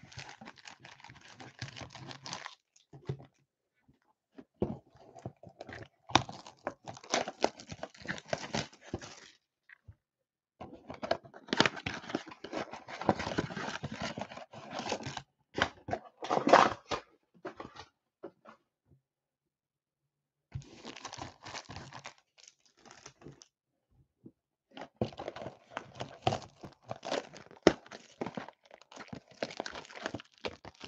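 Foil trading-card packs and a blaster box's cellophane wrap crinkling and tearing as they are handled and opened. The sound comes in stretches of a few seconds with silent gaps between.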